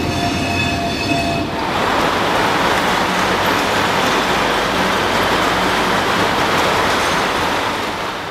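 Freight train wagons rolling past, with high squealing tones from the wheels; about a second and a half in, this gives way to a loud, steady rushing noise.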